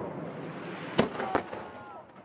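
Fireworks display: a crackling haze of bursting shells, then two sharp bangs about a second in, roughly a third of a second apart.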